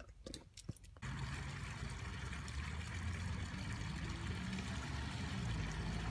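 A few brief clicks, then from about a second in a small stone garden fountain's water trickling and splashing steadily.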